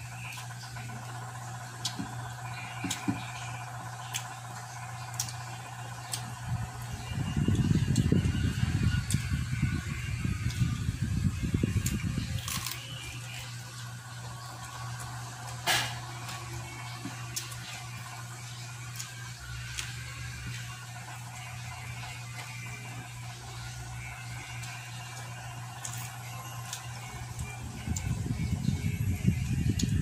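Close-miked eating sounds of crispy deep-fried pork belly (lechon kawali) and rice eaten by hand: chewing with scattered sharp crunches, louder for a stretch about a quarter of the way in and again near the end, over a steady low hum.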